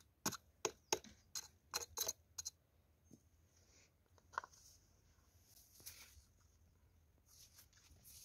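Small handling noises at a generator's oil filler: a run of about seven sharp clicks in the first two and a half seconds, then a single knock. Near the end comes a faint soft noise as oil starts to pour from a plastic bottle into a funnel.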